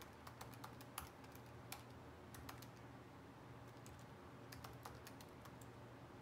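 Faint typing on a computer keyboard, entering a web search: scattered key clicks in the first couple of seconds, then another short run of clicks near the end.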